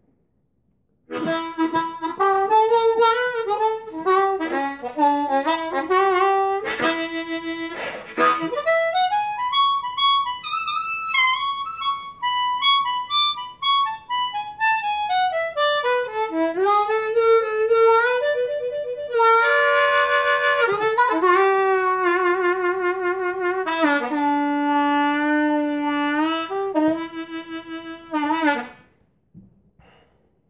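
Kongsheng Amazing 20 ten-hole diatonic harmonica played solo by hand-cupping: a freely improvised melodic run of held notes and chords, with notes sliding up and down in pitch and a warbling shake past the middle. It starts about a second in and stops shortly before the end.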